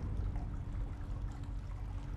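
Steady low rumble with a faint hum and a soft watery wash: the ambient interior sound of a cartoon submarine.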